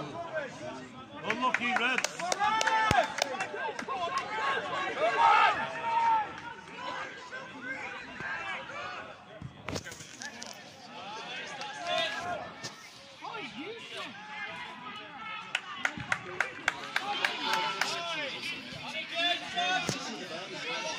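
Shouting and chatter of a small crowd of spectators and of players calling out during a football match, the words unclear, with scattered sharp knocks.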